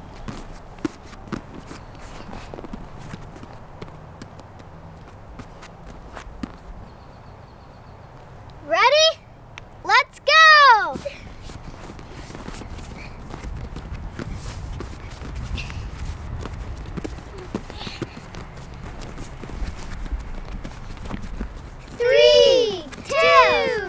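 Soft, scattered taps of hands and feet landing on a vinyl gymnastics mat over a quiet outdoor background, with a voice calling out twice in quick succession, rising and falling in pitch, about nine and ten seconds in.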